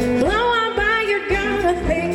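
Live blues-rock band playing loudly: electric guitar and drum kit under a woman's singing voice, which holds and bends its notes.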